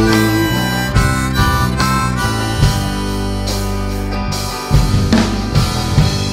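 Live band music in an instrumental break between sung lines: a harmonica playing held and bending notes over electric guitars and drums.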